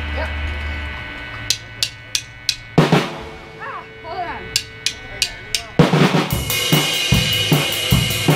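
A low held note fades out in the first second, then a rock drum kit: a few sharp, evenly spaced clicks, a loud hit and scattered hits, and from about six seconds a steady beat of kick drum and snare under a ringing cymbal.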